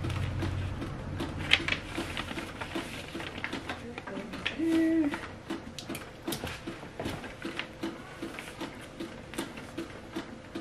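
Sheets of paper being handled and smoothed by hand: rustling with many small clicks and taps, irregular throughout.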